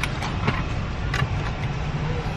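Car engine idling, heard from inside the cabin as a steady low rumble, with a few short clicks over it.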